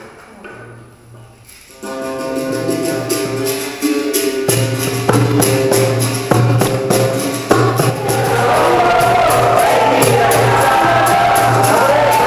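Capoeira instruments starting up. A berimbau comes in about two seconds in, a goblet hand drum joins a couple of seconds later, and from about eight seconds in there is group singing over rhythmic hand clapping.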